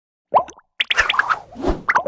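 Cartoon sound effects for an animated logo intro. A short blip rises in pitch about a third of a second in, then comes a quick run of clicky pitched taps, a low thud near the end, and another rising blip.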